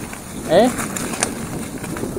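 Steady rolling noise of a bicycle riding down a track at speed, tyres on the surface and wind on the microphone, with a faint click a little past the middle.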